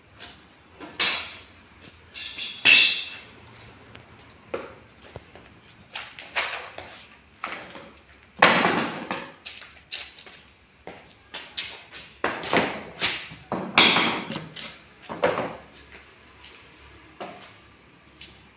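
Wooden boards and a small wooden box being handled, knocked and set down on a concrete floor: a dozen or so irregular knocks and clatters, some with a brief ringing tail.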